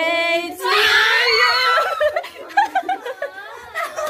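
Several people shrieking and squealing in excited surprise, with one long high scream from about a second in, then breaking into overlapping laughter and chatter.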